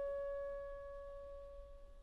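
Clarinet holding a single long note that fades steadily away to very soft.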